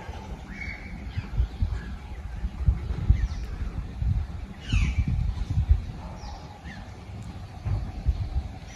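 Outdoor ambience: birds giving a few short, falling calls, over an uneven low rumble that swells and dips, as of wind on the microphone.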